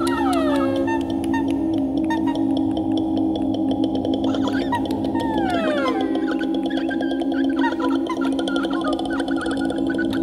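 A woman's voice, multitracked in extended vocal technique: low sustained vocal drones under repeated falling glissandi, dense with clicks and gurgling, gargle-like sounds. One glide slides down at the very start and another long one falls about five seconds in.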